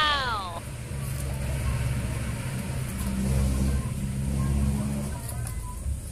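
Low, steady rumble of a motor vehicle engine running, after a falling tone that ends about half a second in.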